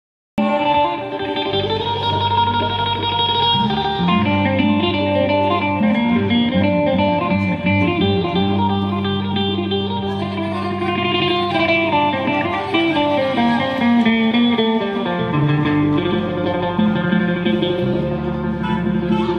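Live band playing Thai ramwong dance music, with electric guitar to the fore over keyboard and bass.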